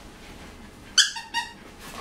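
A three-and-a-half-month-old puppy gives two short, high-pitched yips, about a second in and again a moment later.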